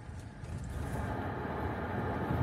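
Cabin noise of a Jeep Gladiator on the move: engine and road noise as a steady low rumble with hiss, growing slightly louder.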